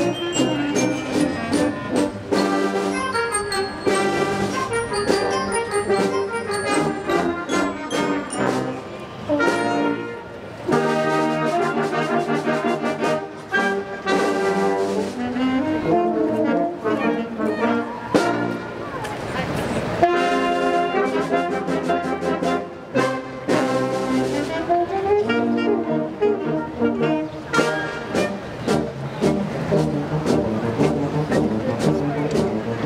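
Community concert band playing a piece: brass and woodwinds over sousaphone and drums, with many moving notes. The recording is distorted because the band is loud for the microphone.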